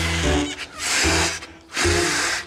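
Cartoon sound of two balloons being blown up: three long puffs of breath hissing into them, about a second apart, over background music.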